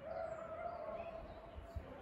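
One long, high-pitched call with a clear steady pitch, starting at once and fading after about a second, over a low background rumble.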